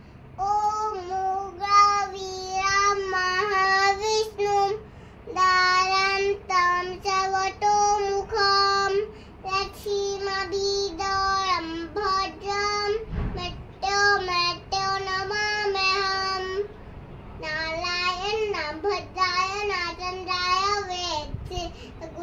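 A young girl singing a Hindu devotional chant in a high voice, in short held phrases with quick breaths between, with a brief pause about three-quarters of the way through.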